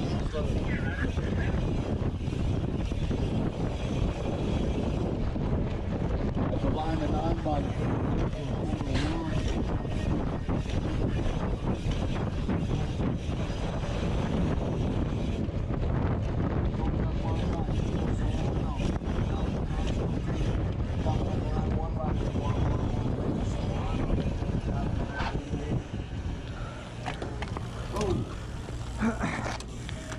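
Wind rushing over the microphone of a camera on the handlebars of a BMX race bike being ridden hard, with rattles and knocks from the bike over the track's bumps. Faint voices sound under it, and the rush eases near the end as the bike slows.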